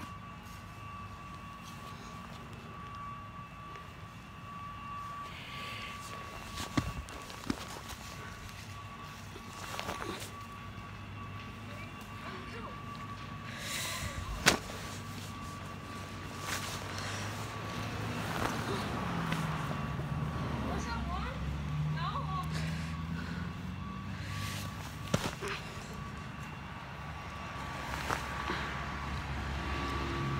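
A car passing on the street, its engine building about seventeen seconds in and easing off later, with a few sharp slaps scattered through, typical of a football landing in a gloved hand. A faint steady high whine runs underneath.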